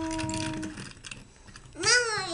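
A voice holding one steady hummed note, imitating a toy car driving, that stops about three-quarters of a second in; just before the end a voice starts again, rising in pitch.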